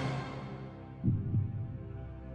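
Background suspense music: a sustained drone with a low double thud like a heartbeat about a second in. A bright cymbal-like wash fades out at the start.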